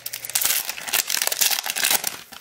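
The wrapper of a Prizm basketball trading-card pack being torn open and crinkled by hand: a dense run of crackles, busiest from about half a second in.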